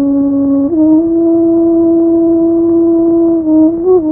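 Film background music: a single sustained melodic note, held long, stepping up a little less than a second in, with a brief wavering turn near the end. The sound is dull and thin, with no treble, as from an old film soundtrack.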